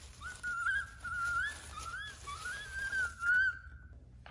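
A person whistling a wavering, meandering tune in a few short phrases, the pitch wobbling and gliding up and down.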